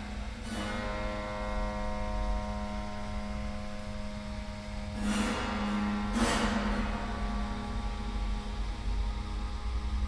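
Strings of a dismantled piano's frame sounded three times: about half a second in, then twice near the middle, each a sharp attack followed by a long ringing cluster of many pitches that fades slowly. A steady electrical hum runs underneath.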